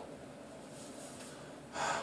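Quiet room tone, then a man's audible intake of breath near the end, just before he speaks again.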